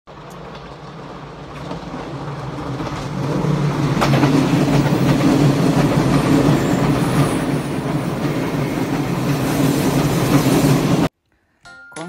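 Train approaching along the track, growing louder over the first few seconds and then running steadily loud until the sound cuts off abruptly about a second before the end.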